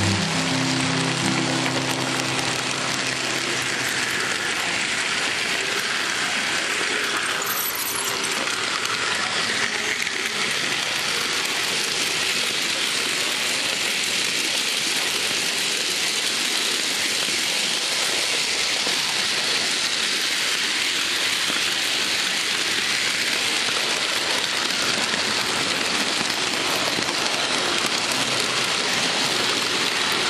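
Steady rolling hiss and rattle of a Märklin H0 model train running on its metal track, picked up close from on board the moving train.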